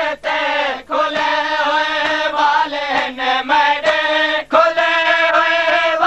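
Men's voices chanting a noha, a mourning lament for Imam Ali, together in long drawn-out notes that waver slightly in pitch. The phrases break off briefly about a second in and again at about four and a half seconds.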